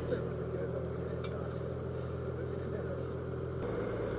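Small dive boat's engine idling with a steady low hum, with faint talk among the divers on board; the hum shifts about three and a half seconds in.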